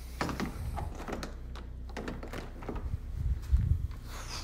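Clicks and knocks of a hand working the knob and lock of a glass door, with a louder low rumble near the end as the door and phone are moved.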